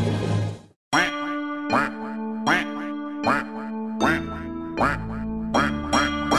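Music fades out and stops briefly just under a second in. A children's song intro then starts, with cartoon duck quacks on the beat, about one every 0.8 seconds, over sustained music.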